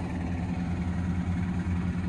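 John Deere 6155M tractor's six-cylinder diesel running steadily, driving a Bogballe M35W twin-disc fertilizer spreader as it throws out nitrate fertilizer.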